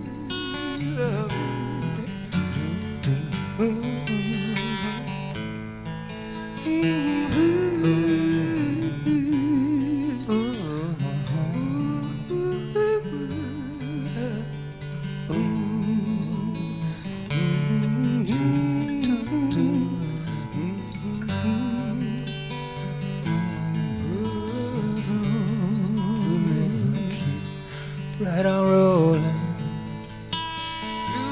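Live acoustic folk music: acoustic guitars playing an instrumental passage of the song, with a wavering melody line above them.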